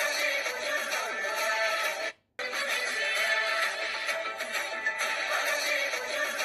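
Background music playing steadily, cutting out to silence for a fraction of a second about two seconds in.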